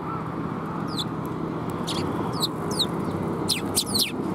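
Eurasian tree sparrows chirping: short, high calls that each drop sharply in pitch, spaced out at first and then coming closer together near the end. Under them runs a steady low background rumble.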